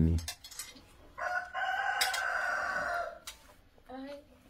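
A rooster crowing once, a single long call of about two seconds.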